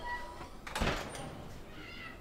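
A man crying, with one loud sobbing breath a little under a second in and a faint whimper near the end.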